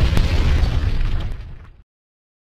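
Explosion sound effect for an intro logo: one heavy blast, strongest in the low end, dying away and then cutting off suddenly near the end.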